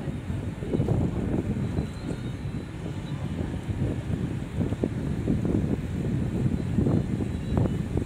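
Low, uneven outdoor rumble with irregular surges and no clear tone.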